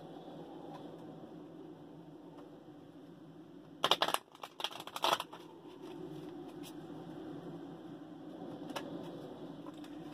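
A deck of tarot cards being shuffled by hand, with a couple of short, loud bursts of cards flicking against each other about four and five seconds in, over a low steady room hum.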